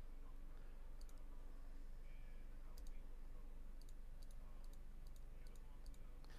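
Faint computer mouse clicks, scattered and some in quick pairs, over a low steady hum.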